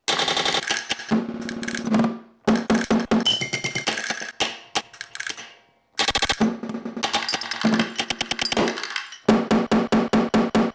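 Snare drum struck with sticks in a free improvisation, its sound sampled and processed live with electronics into dense, rapid stuttering runs of hits. The runs come in bursts that cut off abruptly, with two brief silences.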